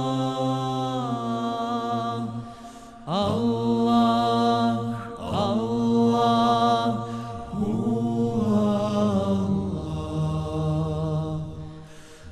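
Male voices singing an ilahija, apparently a cappella. A steady low drone from the backing voices runs under a lead voice's wavering, held phrases, with new phrases sliding in about three, five and seven and a half seconds in.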